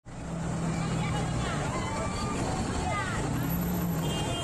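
A large truck's engine running steadily close by, amid road traffic noise, with people's raised voices in the background.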